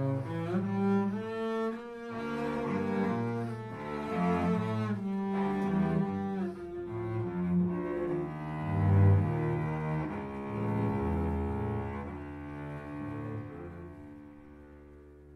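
Cello and double bass playing a bowed duet, a set of variations on a simple tune, the bass holding low notes under the cello's line. The playing dies away near the end.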